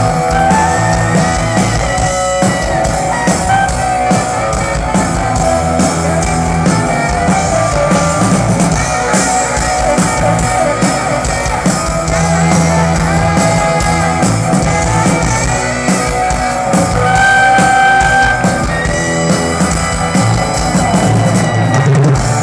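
Live rock band playing an instrumental passage: electric guitar and saxophone holding long notes over bass and drums, loud and steady.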